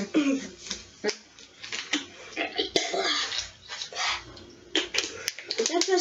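Voices making sounds without clear words, with a few short sharp clicks in the second half.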